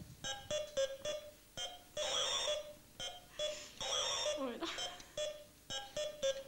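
Electronic beeps from a battery-powered wand-and-track skill game: short blips several times a second, broken by two longer warbling tones about two and four seconds in.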